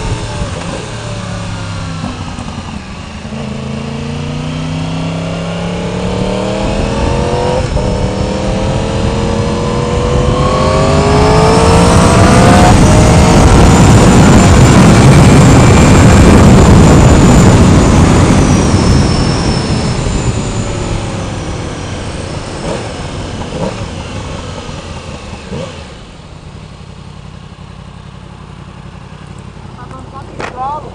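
Motorcycle engine accelerating hard through the gears, its pitch climbing and dropping back at each upshift about three, eight and twelve seconds in. At speed, loud wind rush over the microphone takes over, then fades as the bike slows and the engine settles near the end.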